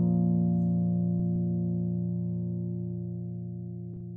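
Acoustic guitar's final chord ringing out and slowly fading at the end of the song, with a faint click or two.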